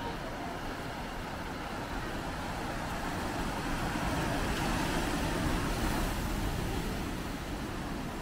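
Surf breaking on rocks below, a steady rushing noise that swells a little in the middle.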